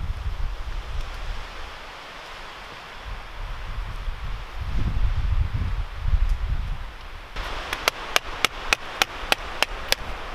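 Wind gusting on the microphone. Then, from about seven seconds in, a hand pruning saw cutting through a thin tree trunk, its strokes giving sharp, even clicks about three a second.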